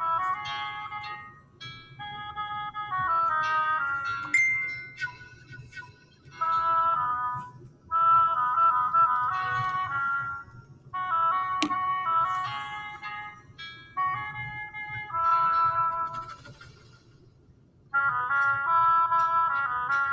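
Solo oboe playing a slow melody in short phrases, separated by brief pauses, the longest near the end.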